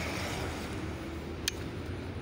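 Steady outdoor background noise, a low hum under an even hiss, with one brief click about one and a half seconds in.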